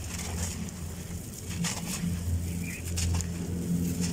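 A moulded clump of dry, gravelly sand crumbling and trickling through the hands in several short gritty bursts, over a steady low drone.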